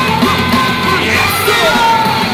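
Live rock band playing loud: electric guitars and drums with a yelled lead vocal over them.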